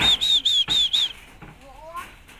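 A bird calling: a quick run of about six short, high chirps in the first second or so, followed by a faint rising whine near the end.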